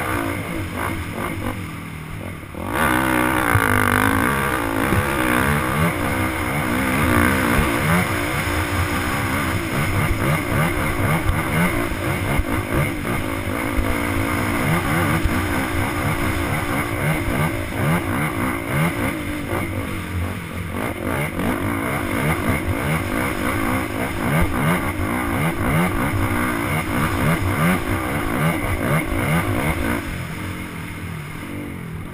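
Dirt bike engine revving hard on a steep uphill trail, the pitch rising and falling again and again as the throttle is worked through the gears, with a brief easing off about two and a half seconds in before it pulls hard again. Wind rushes over the helmet-mounted microphone.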